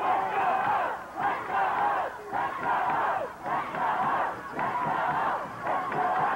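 A high school football crowd yelling together in a rhythmic chant, the massed voices breaking off briefly about once a second.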